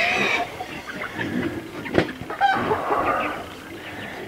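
Hens clucking in short calls, with a single sharp knock about halfway through.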